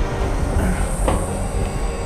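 Drama soundtrack cue: a steady low rumble with a high whine that comes in about half a second in, and one sharp hit about a second in.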